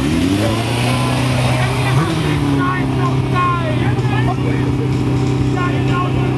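Motorcycle engine running: its revs rise and fall over the first two seconds, then it holds one steady note to the end. Crowd voices can be heard over it.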